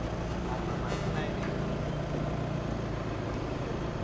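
A car engine running with a steady low hum, under faint voices.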